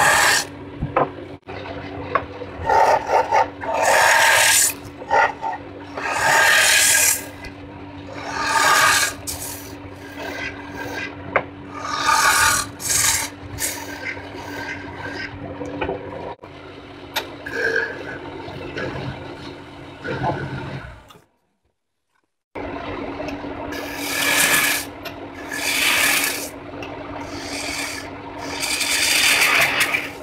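Wood lathe running with a steady hum while a hand-held turning tool cuts into the end of a spinning wood blank, hollowing it, in repeated scraping bursts of about a second each. The sound drops out for a moment about two-thirds of the way through.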